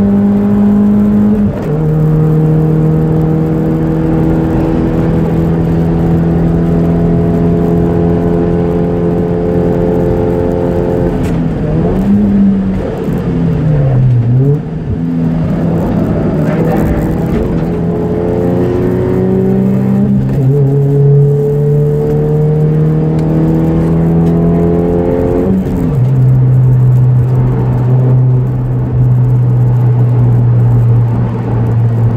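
A car engine heard from inside the cabin while lapping a race track. The revs climb steadily under acceleration and drop sharply at three upshifts: about two seconds in, about two-thirds through, and near the end. Midway the revs fall and blip as the car slows for a corner, then climb again.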